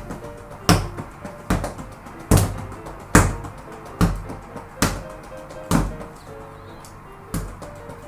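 Bare fists punching a spring-mounted desktop punching bag, a sharp thud roughly every second, with a short pause about three-quarters of the way through. Background music plays under the punches.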